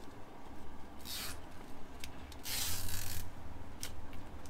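Cardboard boxes and packing being handled: two rasping scrapes, a short one about a second in and a longer, louder one about two and a half seconds in, then a sharp click near the end, over a steady low street rumble.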